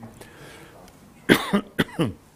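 A man coughing several times in quick succession, starting about a second and a quarter in.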